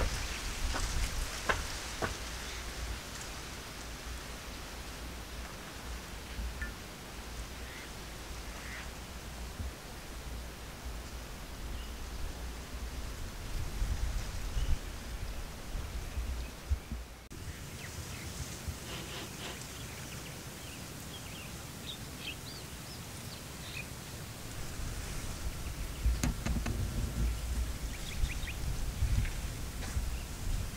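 Outdoor ambience dominated by a low, uneven rumble of wind on the microphone, with faint short chirps, mostly in the second half.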